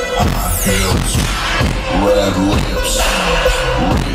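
A trap beat plays loud through a car audio system with two 15-inch subwoofers, heard inside the cabin. The heavy bass comes in right at the start, with deep sliding bass notes under the beat.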